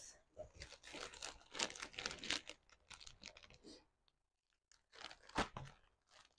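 Plastic courier mailer bag crinkling as it is handled and cut open with scissors, in irregular bursts with a short pause about four seconds in and a sharp snip near the end.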